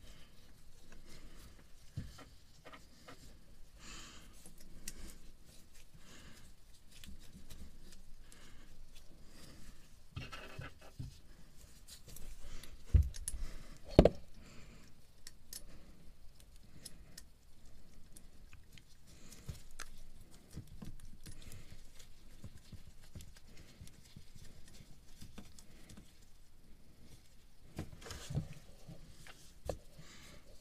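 Gloved hands refitting the exhaust elbow on a Yanmar 3YM30 marine diesel, starting its four nuts on the studs by hand: faint scraping, rustling and small metallic clicks. Two sharp knocks come about a second apart near the middle.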